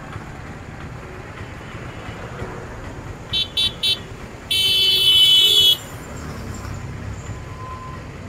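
Vehicle horn over steady road-traffic rumble: four quick toots about three and a half seconds in, then one long, louder blast lasting just over a second.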